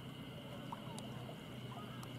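Faint outdoor ambience by a lake: a low steady hum and a faint high steady tone, with a few faint short chirps and a single sharp click about a second in.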